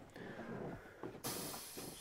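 A short, faint hiss of air from the heavy truck's cab air controls. It starts a little past halfway and lasts about half a second.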